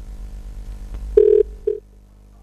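Telephone line tone on a call-in phone feed. A low line hum is followed about a second in by two beeps of one steady mid-pitched tone, the first longer and the second short, and then the line goes quiet. This is the sign of a caller's line dropping or failing to connect, apparently a fault with the call lines.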